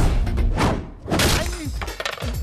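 Movie fight sound effects over background music: a heavy thud at the start, then two loud crashing, shattering hits, about half a second and just over a second in, as a stick strikes a man.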